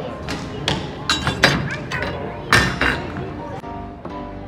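Steel ball dropped onto metal ladles, bouncing and clanking several times with a short ring after each strike.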